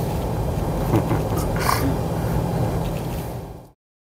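Cabin noise of a 1996 Buick Roadmaster estate wagon on the move: a steady low road and engine hum with a couple of light ticks. It fades out about three seconds in and stops dead shortly before the end.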